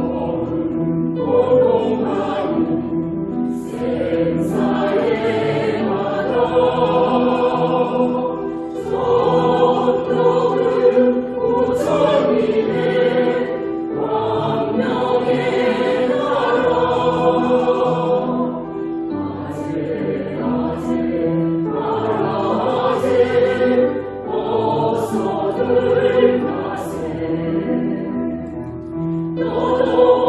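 Mixed choir of women's and men's voices singing a Korean Buddhist hymn in Korean, in sustained phrases of a few seconds each with short breaks between them.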